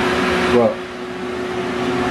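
A steady low hum, with a hiss over it that cuts off about half a second in.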